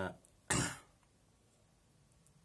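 A man clears his throat once, a short rough burst about half a second in, between spoken phrases.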